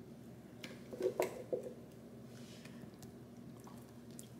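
Thick cashew frosting being scraped out of a Vitamix blender jar into a glass bowl with a spatula: soft squishes and a few short knocks and taps, most of them about a second in.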